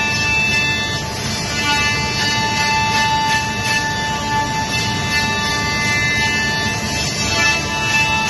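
Masterwood Project 416L CNC machining center routing a wood panel: a steady high whine from the milling spindle over a constant rushing machining noise, with a slight change in the whine about a second in and again near the end.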